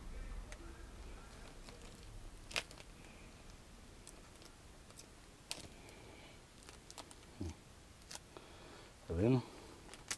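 Light handling noises as window-tint film and tools are worked by hand: a few separate sharp clicks spaced a few seconds apart over a quiet background. A short low vocal sound from a man comes near the end.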